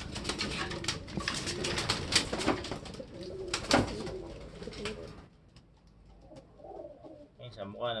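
Pigeons cooing, with close rustling and crackling from the bird held in hand for about the first five seconds, after which it turns quieter.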